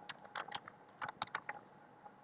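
Computer keyboard being typed on: two quick runs of keystrokes, a few around half a second in and a faster run of about five between one and one and a half seconds.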